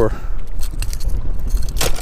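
Wind buffeting the microphone in a steady low rumble, with light clicks and rattles from handling gear and one sharp click near the end.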